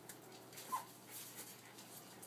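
A West Highland White Terrier puppy gives one short, high whimper about three-quarters of a second in, over faint scratchy noise.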